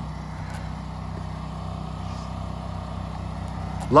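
An engine idling steadily, a low even hum with a fine rapid pulse and no change in speed.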